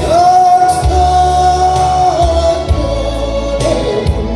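A man singing a Korean song live into a handheld microphone over a band backing with bass and drums. He holds one long note for about two seconds, then slides a little lower and sustains it until near the end.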